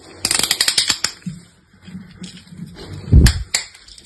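Orange snap-off utility knife's blade being slid out, its slider ratcheting in a quick run of about a dozen clicks. About three seconds in comes a heavier knock, the loudest sound, followed by a single click.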